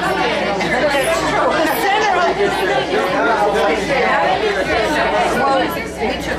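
Loud crowd chatter: many people talking over one another, with no band playing.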